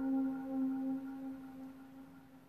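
Concert flute holding one low, steady note with a pure, bell-like tone, which slowly fades away.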